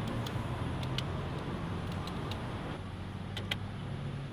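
Steady low street-traffic hum, with a few light clicks in the first second and two more near the end, from ATM keypad buttons being pressed.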